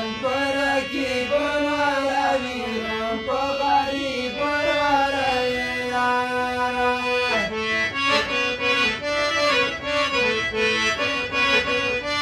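Harmonium playing a Pashto folk melody, its reeds sounding steady chords under a man's voice singing a wavering, ornamented line in the first half. From about seven and a half seconds in, the harmonium takes over with a brisk run of short repeated notes.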